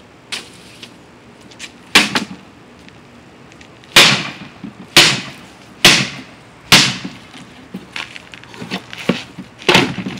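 A long wooden stick whacking a wooden cabinet box. There is a blow about two seconds in, then four hard blows about a second apart, lighter knocks after them, and another hard blow near the end.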